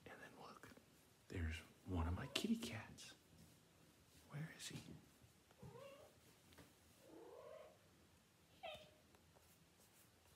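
A house cat meowing softly several times, short calls that rise and fall in pitch, the last one falling near the end. About one to three seconds in there is louder whispering and handling noise.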